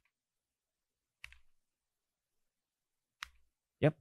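Two single computer keyboard key clicks, about two seconds apart, with dead silence around them.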